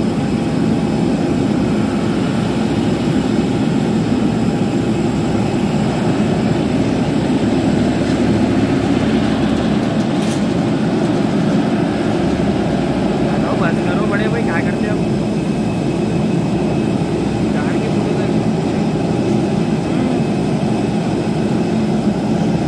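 Jet aircraft turbine engines running on an airport apron: a steady, loud rumble with a constant high whine.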